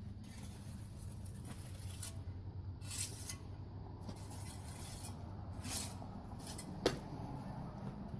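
Quiet outdoor background: a low, steady rumble, with a few brief sharp sounds about two, three, six and seven seconds in.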